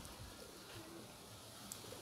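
A bird cooing faintly: a couple of short, low notes, over quiet outdoor background.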